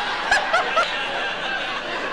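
A woman laughing: a few quick giggling bursts in the first second that trail off.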